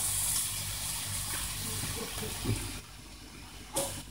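Chicken escalope skewers sizzling on a ridged grill pan, a steady hiss that drops away about three seconds in, then a brief click near the end.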